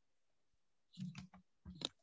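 Faint clicks in two short clusters, about a second in and again near the end, over near silence.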